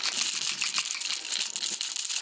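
Dense crackling and rustling noise, full of fine clicks, running without a break.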